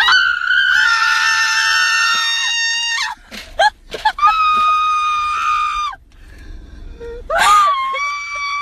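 People screaming in a car, three long high-pitched screams: the first lasts about three seconds, the second comes about four seconds in, and the third starts near the end.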